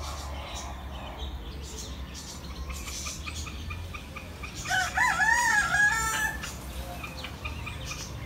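A rooster crowing once, about five seconds in: a wavering call that levels off and holds for about a second and a half. Small birds chirp just before it.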